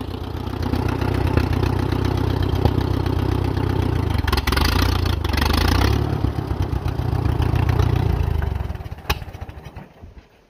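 The four-cylinder engine of an Allis-Chalmers WD forklift tractor running steadily, then dying away about a second before the end, with a single sharp click just before it goes quiet. The engine is tired and in need of carburettor work.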